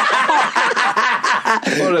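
Men laughing together into close microphones, one man starting to speak again near the end.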